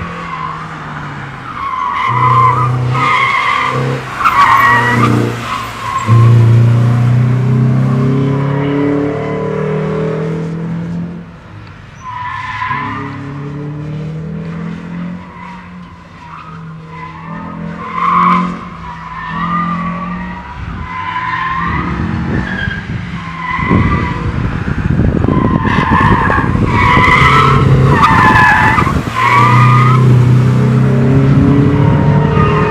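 First-generation Mini Cooper on an autocross run: the engine revs up and falls off between corners while the tyres squeal in repeated bursts through the turns. It gets louder over the last few seconds as the car comes close.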